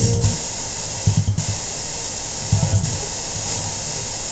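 Spirit box sweeping through radio stations: a steady loud hiss of static, with short choppy bursts of low station audio right at the start, about a second in and about two and a half seconds in.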